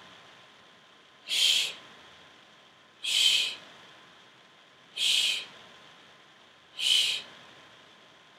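A person's shushing exhales, 'shh' breaths blown between the teeth. There are four short hisses, about one every two seconds, each timed to a hip lift in a bridge exercise.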